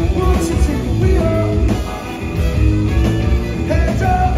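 Live band playing a song at full volume: trumpet and trombone, electric guitar, bass and drums, with a lead singer.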